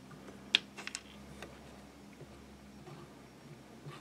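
Light clicks and ticks of handling at a rotary fly-tying vise, a few in the first second and a half, over a faint steady hum.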